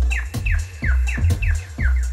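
Live electronic music: a heavy, pulsing bass under short falling-pitch blips that repeat about three times a second, with sharp clicks on the beat.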